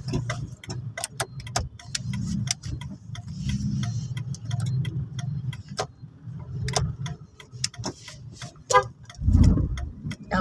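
Car engine and road rumble heard from inside the cabin, with many short sharp ticks and clicks scattered through it, and a heavier low thump about nine seconds in.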